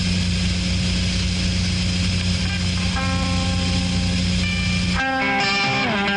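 A steady low hum with hiss, then sustained electric guitar notes ring in about halfway through. Near the end the hum drops away and the electric guitar, played through an amplifier, starts a riff with sliding notes.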